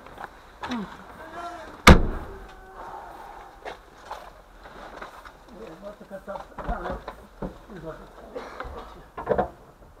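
A single sharp thump about two seconds in, over intermittent muffled talking.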